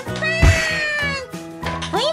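A thud and clatter about half a second in as the plastic Dadandan robot toy is rammed by the Anpanman-go toy and knocked over, with a long, slowly falling cry over children's background music.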